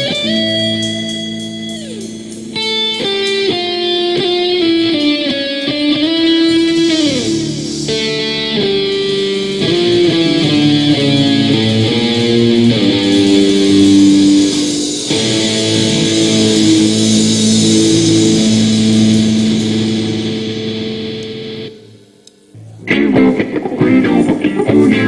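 Live electric rock band: an electric guitar plays a melodic line of held notes with bends and slides over bass guitar and drums. About 22 s in the band stops abruptly for roughly a second, then comes crashing back in loud.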